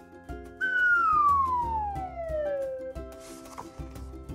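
A whistle-like tone slides smoothly down in pitch for about two seconds, starting about half a second in, over background music with a steady beat.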